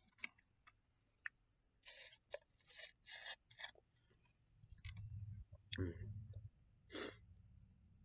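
A few sharp clicks, then a run of short rustling noises close to the microphone, as a webcam is handled. About halfway through, a low rumble comes in under a murmured "mm hmm."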